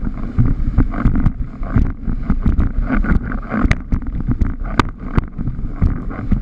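A 91-litre Supersport windsurf board slapping and clattering over chop at planing speed, with many irregular sharp slaps a second over wind buffeting the GoPro microphone and the hiss of water rushing past.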